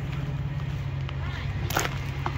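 Heavy truck's diesel engine idling steadily, a low even hum, with one sharp click near the end.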